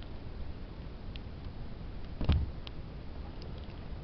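Handling noise from a handheld camera being moved: a low rumble with a few faint clicks, and one louder knock a little past the middle.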